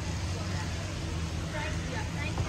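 Street background: a vehicle engine running with a steady low hum, with faint voices in the distance.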